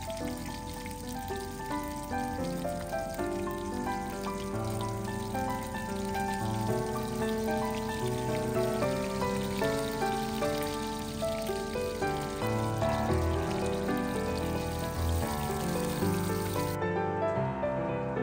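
Background instrumental music with held notes over the sizzle of snakehead fish pieces frying in hot oil in a pan. The sizzle cuts off suddenly near the end, leaving only the music.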